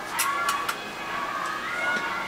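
A cat meowing, with a few sharp clicks in the first second.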